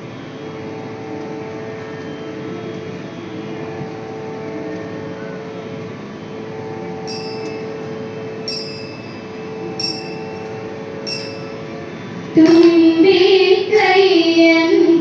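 A steady musical drone holding one pitch over a light hiss, in a pause between sung lines. From about seven seconds in come four light, ringing metallic taps, roughly a second and a half apart. Near the end a woman's singing voice comes in loudly.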